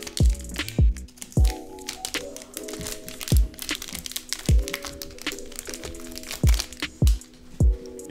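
Foil trading-card booster-pack wrapper crinkling and crackling as it is handled and opened by hand, with several sharp low thumps at uneven intervals. Background music with held chords plays underneath.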